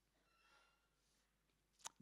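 Near silence: room tone, with one short click near the end.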